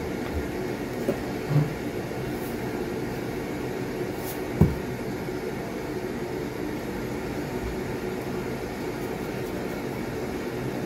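A steady low background hum with a few soft knocks; the loudest knock comes about four and a half seconds in.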